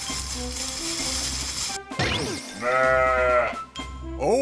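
Cartoon background music, then about two seconds in a short sliding cry followed by one held animal call of about a second, louder than the music.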